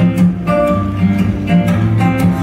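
Acoustic guitar strummed steadily, its chords ringing between sung lines of a folk song.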